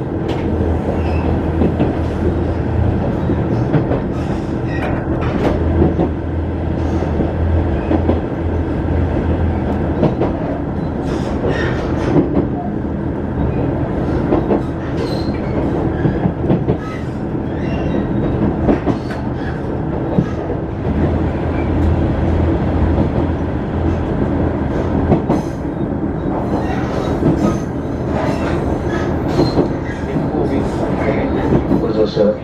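A Tadami Line diesel railcar running, heard from on board: a steady engine drone with wheel-on-rail rumble and scattered light clicks from the track.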